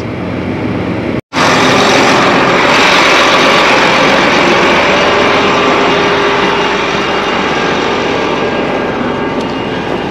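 Large farm tractor running steadily while the tine weeder is folded up. About a second in, a sudden cut gives way to a louder, even rush of engine and machinery noise, heard from outside beside the implement, that eases slightly toward the end.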